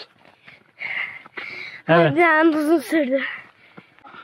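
A person's voice saying 'evet' (yes) in a drawn-out, wavering tone, preceded by a couple of short breathy noises.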